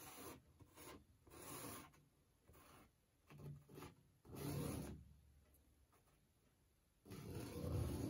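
A drawing stick scratching across a painted canvas in a run of short, faint strokes as the first outline is sketched in. A longer, louder stretch of rubbing begins about a second before the end.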